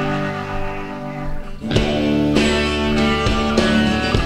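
Live band's instrumental passage led by plucked guitar. The playing thins out briefly, then a fresh chord is struck about a second and a half in and rings on under further picked notes.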